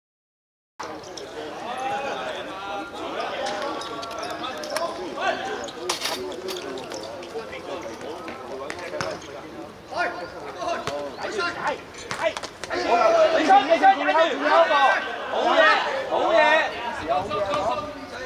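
Men shouting and talking, with a few sharp thuds of a football being kicked; the voices get louder about two thirds of the way in. The sound starts only after about a second of silence.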